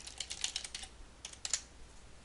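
Computer keyboard being typed on: a fast run of keystrokes for about the first second, then three more after a short pause.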